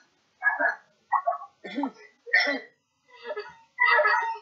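A person's voice in about six short, separate vocal sounds with dead silence between them.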